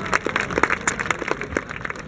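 Scattered hand clapping from an audience: irregular sharp claps over a bed of crowd noise.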